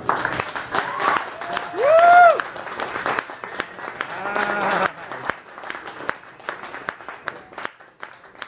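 Audience applause at the end of a performance, with one voice cheering in a loud rising-then-falling call about two seconds in and more voices calling out around four and a half seconds; the clapping thins out toward the end.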